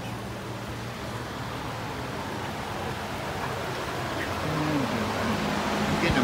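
Steady rushing background noise, with a person's voice coming in during the last second and a half.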